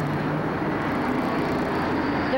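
Steady rumble and hiss of a vehicle engine running, with a faint low hum and no change in pitch.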